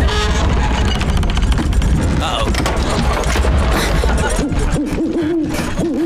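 A sustained low rumble as the treehouse shakes, then an owl-call alarm hooting: the three-hoot warning that the treehouse is collapsing.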